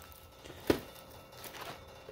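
Handling noise from a shrink-wrapped box of card packs, quiet apart from one short tap about two-thirds of a second in.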